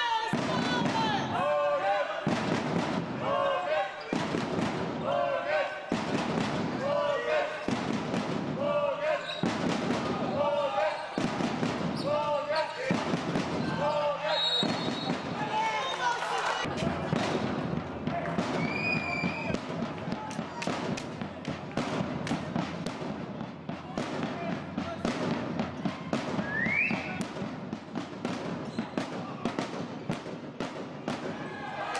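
Handball match in a sports hall. For the first half, voices call out together in a regular rhythm, about once a second. After that the ball bounces repeatedly on the hall floor and shoes squeak, with one short rising squeak near the end.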